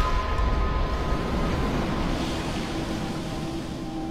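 Water splashing and churning as an osprey thrashes at the surface after plunging onto a fish, the noise slowly fading. Soft sustained music notes play underneath.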